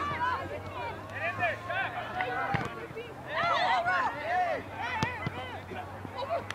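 Several voices shouting and calling at once across a soccer field, with a couple of sharp knocks, one about two and a half seconds in and one about five seconds in.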